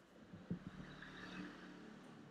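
Faint room noise with a soft click about half a second in.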